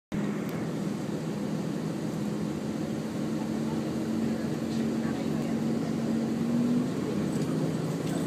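Diesel engine of a 2000 series tilting train pulling out of the station, heard from inside the car: a steady hum whose pitch rises slowly, then drops about seven seconds in.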